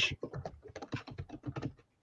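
Rapid, irregular light clicks and taps, several to the second, with a short pause near the end.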